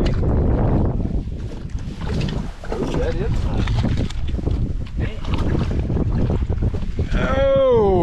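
Hooked smallmouth bass thrashing and splashing at the surface beside an aluminium boat, with heavy wind buffeting the microphone. Near the end there is a drawn-out human exclamation falling in pitch as the fish is netted.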